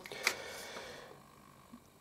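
Faint handling noise of multimeter test probes being repositioned: a light click about a quarter second in and a soft rustle that fades within the first second, then near silence with one tiny tick.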